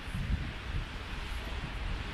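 Wind buffeting the microphone: an uneven low rumble over a steady outdoor hiss.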